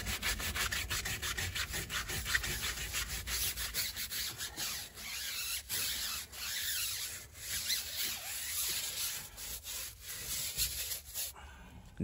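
Stiff-bristled tyre brush scrubbing a wet, foamed rubber tyre sidewall in quick, irregular back-and-forth strokes, stopping near the end.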